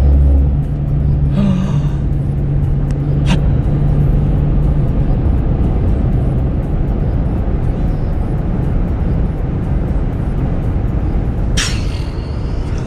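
Road and engine noise inside a moving car's cabin: a steady low rumble, with a low even hum for roughly the first five seconds.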